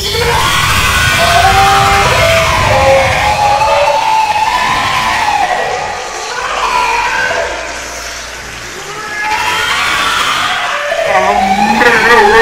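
Two men screaming and laughing with excitement, over the Reactoonz 2 online slot's win music and effects. The shouting eases off briefly about two-thirds of the way through, then picks up again.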